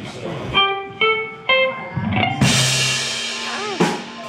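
Electric guitar picks three single notes about half a second apart. About halfway through, the full blues band comes in with a cymbal crash, drums and a held bass note.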